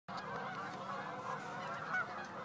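A large flock of geese calling in flight: a dense, steady chorus of many overlapping honks.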